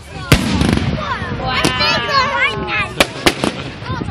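Fireworks going off overhead: one sharp, loud bang just after the start, then more bangs about three seconds in.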